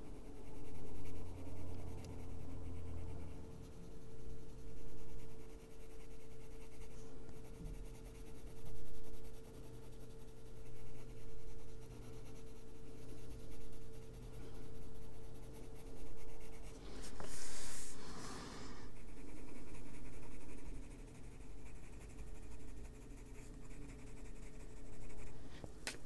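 Coloured pencil scratching on paper in short repeated shading strokes, over a faint steady hum. A brief louder rustle comes about two-thirds of the way through.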